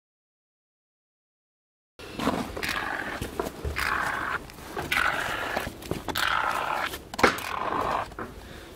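Silent for the first two seconds, then an aerosol can of expanding spray foam hisses in about five short bursts as foam is sprayed along the base of the foam block wall, with a sharp click near the end.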